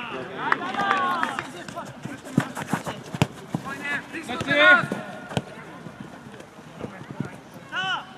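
Footballers shouting calls to each other during play, in bursts about half a second in, around four seconds in and at the very end. Between the shouts come several sharp knocks of the ball being kicked.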